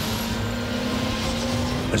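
Race-modified Ford Transit van's turbocharged engine pulling at full throttle, heard from inside the cabin: one loud, steady engine note whose pitch creeps slowly upward as the revs build.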